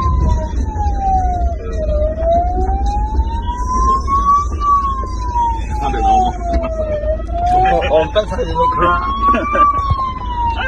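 Police siren wailing, its pitch rising and falling slowly, about once every five seconds, heard inside a moving vehicle's cabin over a steady low rumble.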